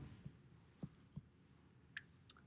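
Near silence: room tone in a pause between speech, with three or four faint, brief ticks.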